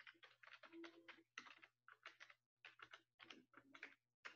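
Faint, irregular clicking of keys being typed on a computer keyboard, over a low steady hum.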